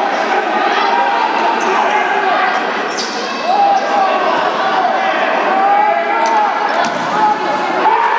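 Echoing sports-hall sound of a futsal game: players and spectators shouting at a distance, and the ball being kicked and bouncing on the court, with one sharp kick about three seconds in.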